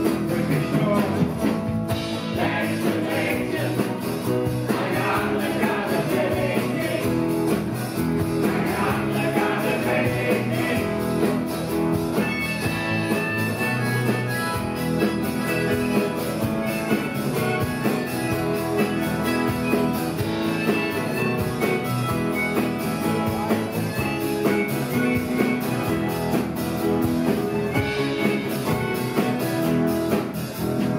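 Live band playing a rock song on acoustic guitar, bass and drums, with several voices singing. Men's and women's voices are in the mix, and the music keeps a steady beat.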